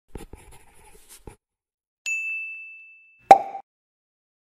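Sound effects of an animated logo intro: a few faint clicks, then about two seconds in a single high ding that rings for over a second, cut short by a sharp, louder pop.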